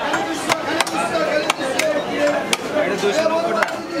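A carp being scaled and cut against an upright fixed bonti blade: irregular sharp scraping clicks, about seven of them, as the fish is drawn across the edge. Voices chatter throughout.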